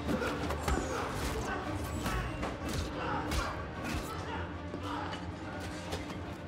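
Movie hand-to-hand fight sound effects: a quick run of punches, kicks and swishes with grunts of effort, over a low, tense music score.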